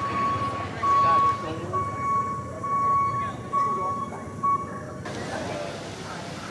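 A high, steady beeping tone that sounds roughly once a second in uneven pulses, with faint chatter around it, and stops about four and a half seconds in.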